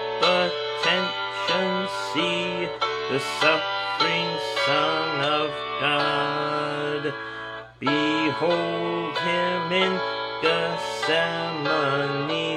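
Recorded instrumental accompaniment of a hymn tune playing, with a man singing the hymn along with it; the music drops away briefly between phrases about three-quarters of the way through.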